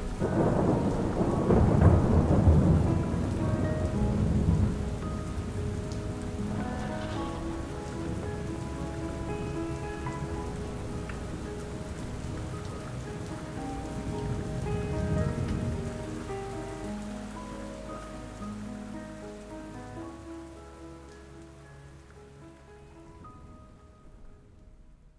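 Steady rain with rolling thunder, the loudest roll at the start and a second one about fifteen seconds in, under soft sustained background music notes; all of it gradually fades out over the last several seconds.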